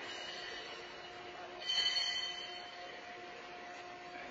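A steady electrical-sounding hum in a large, echoing hall, with a brief high-pitched metallic squeal or scrape about two seconds in.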